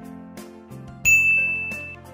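Background music with a bright bell-like ding about halfway through that rings on and fades: a notification-bell sound effect.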